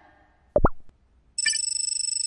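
Editing sound effects: a quick two-part cartoon pop about half a second in, then, from about a second and a half, a bright, high electronic tone trilling rapidly.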